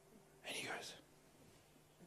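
A man's short breathy whisper close to a handheld microphone, lasting about half a second, starting about half a second in, then near silence.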